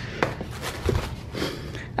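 Handling noise as a cardboard jigsaw puzzle is lifted out of a tissue-paper-lined cardboard box: rustling, with a sharp click a short way in and a soft low thump about halfway.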